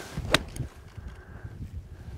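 Golf iron striking a ball off fairway turf: one sharp crack about a third of a second in.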